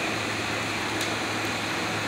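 Steady background hum and hiss of room noise, with one faint click about a second in.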